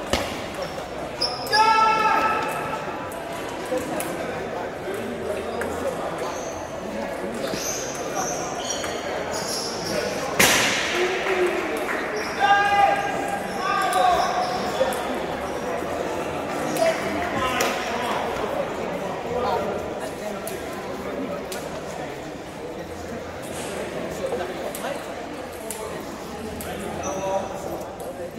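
Table tennis ball clicking on bats and table and bouncing, echoing in a large hall, under the chatter and shouts of players and spectators. A single sharp bang comes about ten seconds in.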